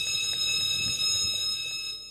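One high, steady electronic buzzer tone, held for about two seconds and fading near the end, sounding as a ceremonial start button is pressed.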